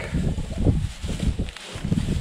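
Wind buffeting the microphone, a gusty rumble with faint rustling.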